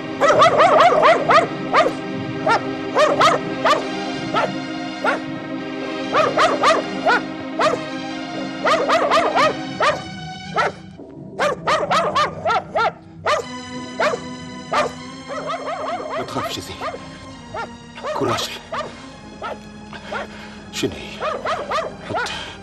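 A dog barking over and over in quick runs, with a short pause about eleven seconds in, over background music of held tones.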